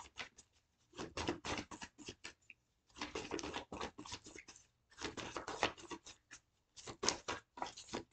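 A deck of tarot cards being shuffled by hand: quick papery card flicks in about four bursts of a second or so, with short pauses between.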